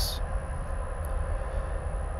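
Steady hum and rush of a running reef aquarium's pumps and water flow, with a low rumble underneath.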